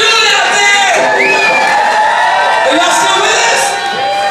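Concert audience cheering and whooping, with several voices shouting at once.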